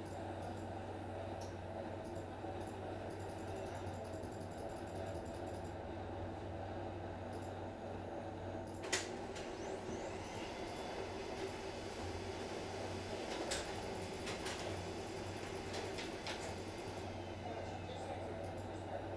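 Steady low hum of room background noise, with a few faint clicks scattered through it and one sharper click about nine seconds in.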